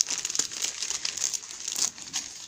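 Tissue paper crinkling and rustling irregularly as it is pulled away by hand to unwrap a small gift.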